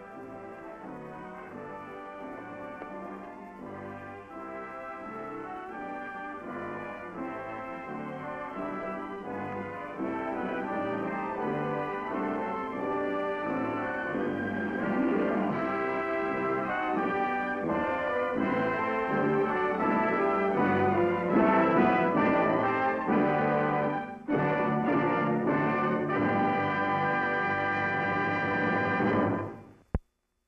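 Brass-led orchestral film music, growing steadily louder, with a brief break about three-quarters of the way through before a loud final passage that cuts off suddenly at the end.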